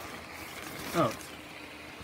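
Small electric blower fan of a Gemmy inflatable penguin decoration running with a steady rush of air, mixed with rustling of the nylon fabric as it is handled.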